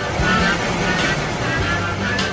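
Cartoon car engine sound effect, a steady noisy running sound, over background music with a bass line.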